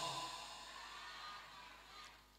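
A faint lull in amplified speech: the echo of a voice over a PA fades away into quiet, steady background hiss.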